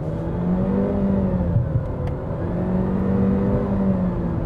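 Honda Civic RS Turbo's 1.5-litre turbocharged four-cylinder engine pulling hard through its CVT, heard from inside the cabin as the car accelerates. The engine note dips once about halfway and then climbs again.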